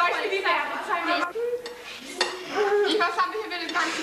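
Forks and spoons clinking and scraping against dinner plates at a meal, with a few sharp clinks among them. Several children's voices talk over it.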